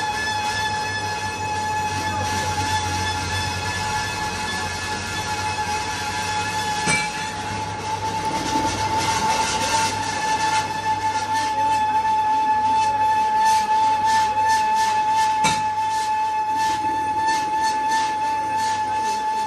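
Metal lathe turning a steel shaft under cut, with a steady high-pitched whine from the cutting tool against the work over a low machine hum.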